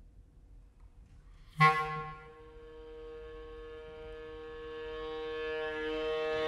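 Bb clarinet and viola in contemporary chamber music: after a short near-silent pause, a sudden sharp accent, then one long held note that swells gradually louder.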